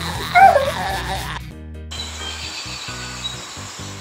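A high cartoon voice giggling for about the first second and a half, then light background music with steady stepped notes.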